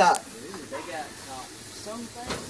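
Steady hiss from a lit gas grill, under faint voices, with a man's spoken word at the very start.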